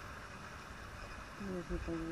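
Faint background with a brief, quiet, low murmured human voice about one and a half seconds in.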